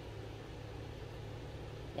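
Steady low background hum of a room, with no other sound standing out.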